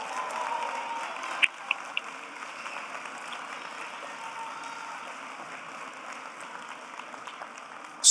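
Audience applauding, a little louder in the first second or so, then steady and easing off slightly.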